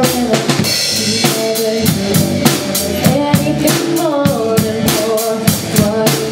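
Live rock band playing in a room: a drum kit keeping a steady beat with snare, bass drum and cymbals, electric guitar and bass guitar, and a female singer on a microphone.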